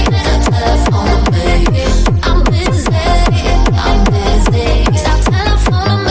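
Fast hard techno track: a kick drum on every beat, each kick a short downward-sweeping thud, under repeating synth lines. No vocals.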